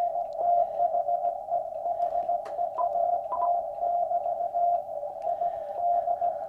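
Morse code (CW) signal received on an ICOM IC-7300 transceiver through its narrowest filter: a single mid-pitched beep keyed quickly on and off over faint hiss of band noise.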